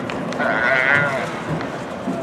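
A roping calf bawls once, a short wavering cry about half a second in, as the roper throws it onto its side.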